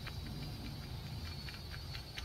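Faint, steady low rumble with a few soft clicks: a baitcasting reel being cranked at medium speed on a straight retrieve.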